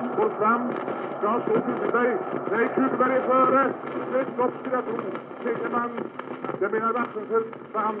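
Archival Swedish radio sports commentary: a male commentator talking fast and without pause, the old recording thin and narrow-band over a steady background hiss.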